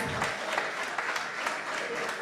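Audience applauding, a steady clatter of many hands.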